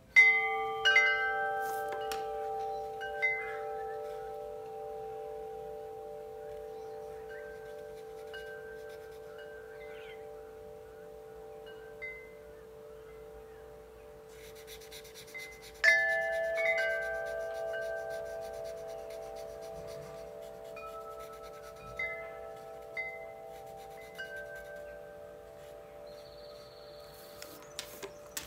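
Chime tones ring out: a cluster struck together at the start and another about 16 seconds in, each fading slowly, with scattered single higher notes sounding in between.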